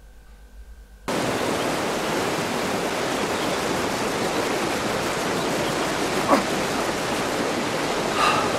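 Fast, shallow river rushing over stones: a steady, even rush that cuts in suddenly about a second in, after a quiet moment.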